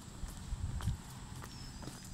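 Footsteps of a person jogging on a paved sidewalk: soft, regular steps with a few low thumps a little after half a second in.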